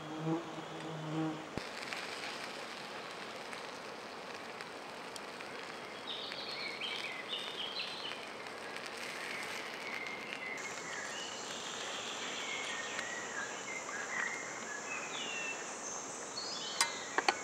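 Forest ambience with insects. An insect buzzes for the first second or so, then there is a steady hush with scattered short high chirps, and from about two-thirds of the way in a steady, very high insect trill.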